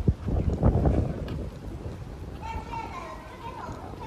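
Low gusts of wind buffeting the microphone through the first second or so, then voices talking in the background from about halfway through.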